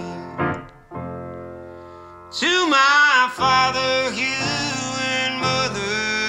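Male voice singing over solo piano: a piano chord rings and fades, then about two seconds in the voice comes in strongly on a long, wavering sung note, with the piano continuing beneath.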